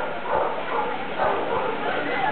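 A dog barking a few times, with voices in the background.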